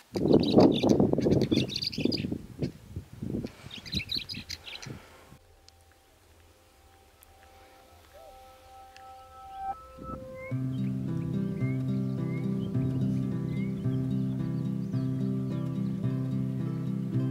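Birds chirping outdoors for about five seconds, cut off suddenly. Then instrumental music begins: a few long held tones, and from about ten seconds in a steady, even run of notes.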